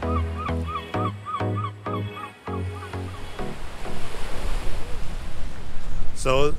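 Electronic dance music with a steady beat, about two beats a second, fading out a little after three seconds in. A steady rushing noise of outdoor air and sea then swells up in its place.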